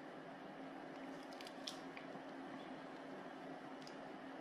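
Faint steady low hum, with a few small soft clicks about a second and a half in, from fingers handling the control knob of a home-made bench power supply.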